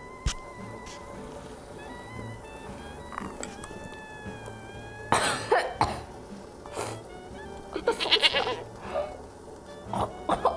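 A woman coughing and choking after taking melon Ramune soda up her nose: one loud cough about five seconds in, another near seven seconds, then a quick run of coughs around eight seconds. Quiet background music runs underneath.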